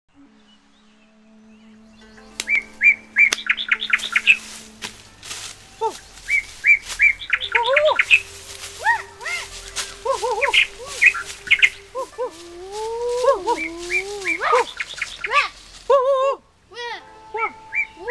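Jungle bird calls: quick high chirps and trills mixed with lower calls that swoop up and down in pitch, beginning about two seconds in.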